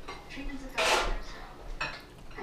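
Metal cutlery knocking against a dinner plate near the microphone: one loud knock about a second in and a second, shorter one near the end.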